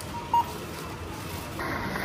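A single short electronic beep from a supermarket checkout barcode scanner as an item is scanned, over steady store background noise.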